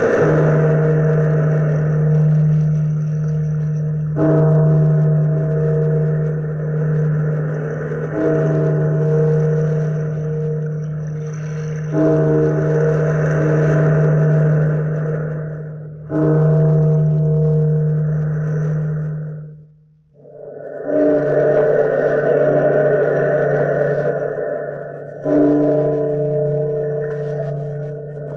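A large, deep bell tolling slowly, struck about every four seconds, each stroke ringing on and fading into the next. There is a brief gap about twenty seconds in before the tolling resumes.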